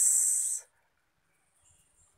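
A drawn-out, high-pitched "s" hiss from a speaking voice, the tail of a spoken word, lasting about half a second and cutting off sharply, followed by near silence.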